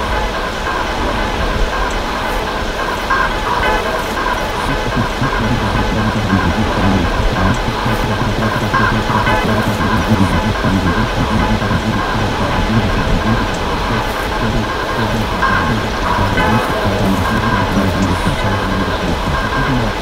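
Live electronic music from a modular synthesizer: a dense, continuous texture of steady held tones over a noisy low rumble, growing a little louder a few seconds in.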